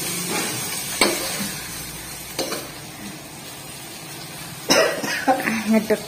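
Vegetables stir-frying in a wok: a steady sizzle with a few light clicks of a utensil against the pan. A person's voice breaks in briefly near the end.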